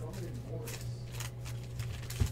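Foil wrapper of a trading-card pack crinkling and tearing as it is opened by hand, in irregular crackles over a steady low hum.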